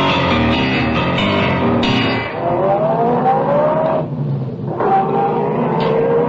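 A short music cue, then a vehicle engine sound effect accelerating, its pitch rising. It breaks off briefly about four seconds in and climbs again from a lower pitch.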